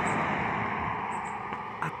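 A passing vehicle's road noise, a steady hiss that slowly fades as it drives away.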